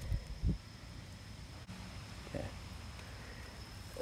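Two dull low thumps near the start from a handheld camera being jostled while carried over ground, under a faint steady high-pitched whine.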